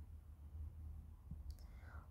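Quiet room tone with a steady low hum and a few faint clicks from a stylus tapping on a tablet's glass screen during handwriting.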